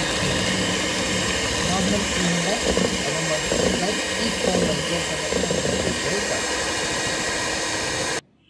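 Electric hand mixer running steadily at speed, its beaters whipping cream in a stainless steel bowl.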